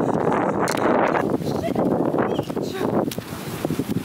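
Wind buffeting a phone's microphone as it is carried along, a dense rushing noise that eases a little near the end, with indistinct voices under it.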